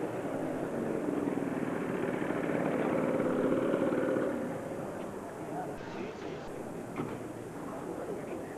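Car engine running nearby, swelling a little after three seconds in and fading about four and a half seconds in, over indistinct crowd chatter.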